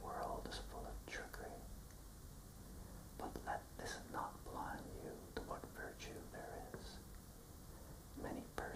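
A man whispering lines of a poem in a slow reading, with short pauses between phrases.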